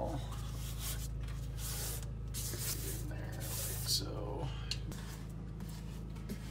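Grout being rubbed by hand into the edge joints of a glass tile backsplash: a run of short, scratchy rubbing strokes over a steady low hum.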